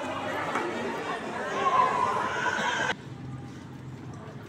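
Indistinct chatter of several people in a large hall, with a higher sliding voice-like call near two seconds in. It cuts off abruptly about three seconds in to a quieter background with faint clicks.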